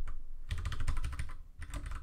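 Computer keyboard typing: a quick run of keystrokes with a brief pause about three quarters of the way through.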